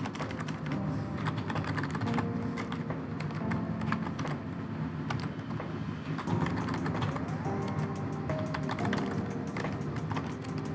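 Typing on a computer keyboard: an irregular run of quick key clicks, over background music with held tones.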